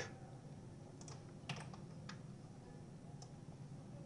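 A few faint, scattered clicks from working a computer's mouse and keyboard, about four over the stretch, over quiet room tone.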